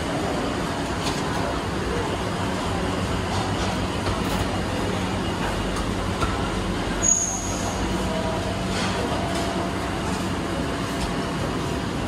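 Steady ambient din of a hawker centre: the whir and hum of electric fans and kitchen equipment, with a few faint clinks. A brief high-pitched squeal about seven seconds in is the loudest moment.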